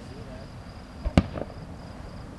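Aerial fireworks shells bursting: one sharp, loud bang about a second in, with fainter reports just before and after it, over a steady high insect trill.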